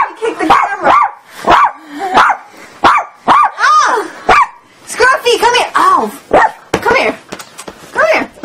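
A run of short, high-pitched barks and yips, about two a second, mixed with laughter.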